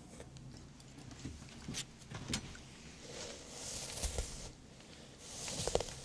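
Hands working through hair close to the microphone: soft rustling swishes, with two longer ones near the middle and at the end, and scattered small clicks.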